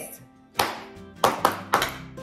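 A few irregular hand claps, about six sharp claps over the second half, with background music playing underneath.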